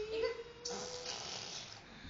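A baby making her 'furrrr' sound: a short held voice tone, then a breathy raspberry blown through the lips for about a second.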